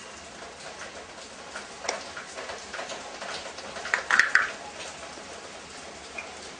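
Small clicks and rubbing of a hand handling the rubber spark plug cap and lead on a motorcycle's air-cooled cylinder head, with a louder cluster of clicks about four seconds in.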